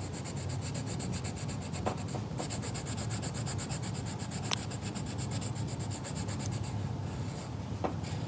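A coloured pencil shading back and forth on sketchbook paper in rapid, even strokes, with a few light ticks. The strokes stop about seven seconds in.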